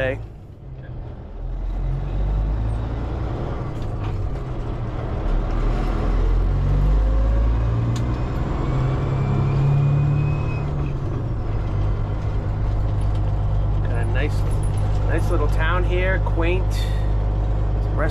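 Heavy truck's diesel engine running, heard from inside the cab as the truck drives. Its low drone climbs in pitch from about six to ten seconds in as the truck gathers speed, then holds steady.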